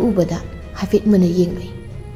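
A woman's voice speaking in short phrases over soft background music.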